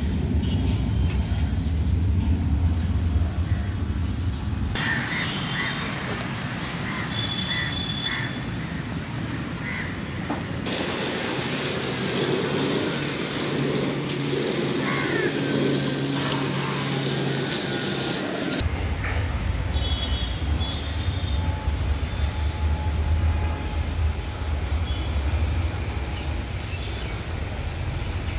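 Outdoor city ambience: crows cawing and other short bird calls over a low rumble of traffic. The background changes abruptly a few times.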